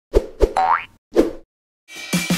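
Logo-intro sound effects: two quick knocks, a rising boing, then a third knock. Music starts just before the end.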